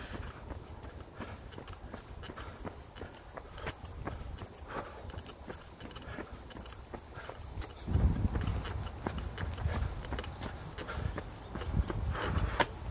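Rhythmic footfalls of a person jogging on a paved path, with heavy breathing close to the microphone. About eight seconds in, a louder low rumble joins the steps.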